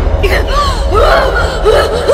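Repeated short, high, breathy vocal sounds like gasps and whimpers, a few each second, over a steady low rumble from a horror film score.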